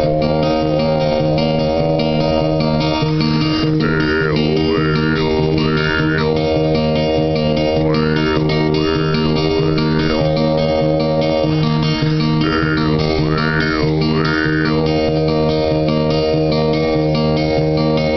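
Acoustic guitar strummed in a steady pulse of about two strokes a second, under a low held chanted drone. Three times the chant's vowel sound sweeps up and down.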